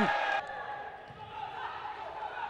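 Faint sports-hall ambience during a pause in a volleyball match: distant voices and court noise in a large, echoing gym.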